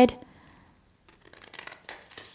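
Scissors snipping through folded paper: a few faint, short snips in the second half, after a near-silent pause.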